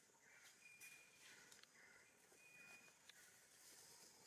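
Faint outdoor ambience in which a distant animal repeats a short call about twice a second, with a couple of brief thin whistles and a few light clicks.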